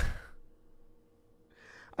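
A man's short, breathy laugh at the start, then a softer breath near the end.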